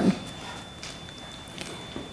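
A pause in a woman's talk at a microphone: the tail of her last word, then low room tone with a thin steady high-pitched tone and a couple of faint clicks.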